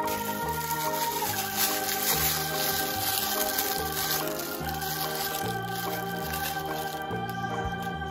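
Background music: sustained organ-like keyboard chords over a bass line that steps to a new note about every half second.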